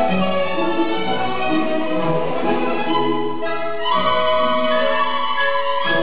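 Instrumental classical ballet music playing steadily, sustained melodic notes changing throughout.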